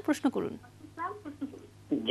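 Short, broken bits of a caller's speech coming through a telephone line, with sliding pitch and quiet gaps between them.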